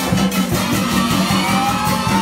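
Live comparsa band, a street-style percussion and brass ensemble, playing dance music: steady drumming with a bass drum, and a held note that rises in pitch through the second half.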